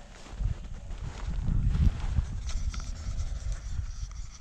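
Wind buffeting the microphone: an uneven low rumble that swells to its loudest in the middle.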